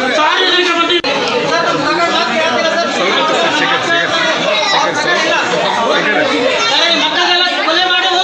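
A crowd of children and adults talking over one another, with children crying and wailing among the voices.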